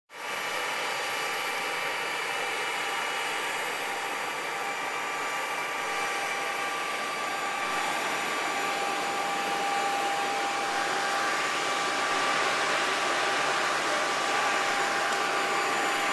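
Engine and airflow noise inside a small plane's cabin: a steady rushing hiss with several steady whining tones over it, growing a little louder.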